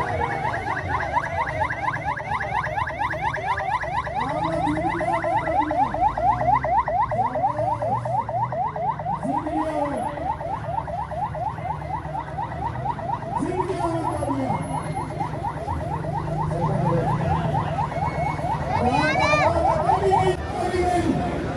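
Electronic siren sounding a rapid yelp, a rising whoop repeated about four times a second, over the noise of a large crowd. A lower tone rises and falls every few seconds, and a steep rising sweep comes near the end.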